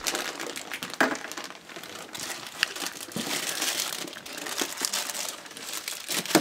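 Plastic snack bags crinkling as they are handled and pushed into a plastic cooler, with a few light knocks, the sharpest about a second in.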